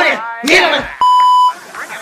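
A single electronic bleep at one steady pitch, lasting about half a second and starting a second in, right after a man's voice.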